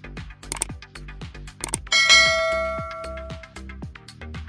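Background music with a steady beat, over which a subscribe-button animation plays its sound effects: a couple of short clicks, then about two seconds in a bright notification-bell chime that rings and fades away over about a second and a half.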